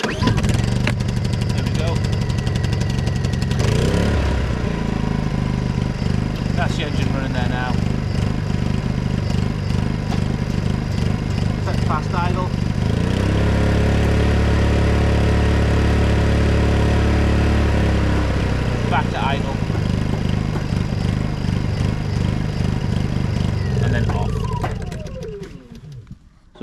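Honda EU20i inverter generator's small single-cylinder four-stroke engine pull-started on choke, catching at once and running on its test run after an oil, spark plug and air filter service. Its speed shifts a few times and is steadiest and loudest in the middle. Near the end it is shut off and winds down with a falling whine.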